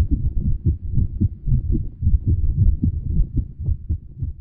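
Low, muffled thumping, several thumps a second, with nothing high in it.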